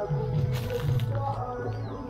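Background music: a low repeating bass figure under a higher melody, at a steady level.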